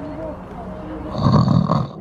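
A recorded snore played as a sound effect: one long, loud snore from about a second in until just before the end, from a sleeping trail character.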